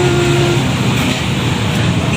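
Steady street traffic noise: road vehicles running with a low engine hum, and no speech over it.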